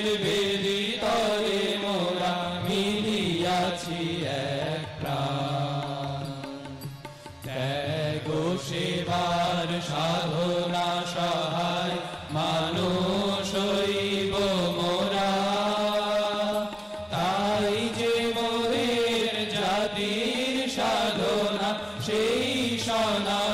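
A group of male voices singing a devotional song together, to harmonium and tabla, the harmonium giving a steady held note under the melody. The singing eases into a short lull about a third of the way through, then resumes.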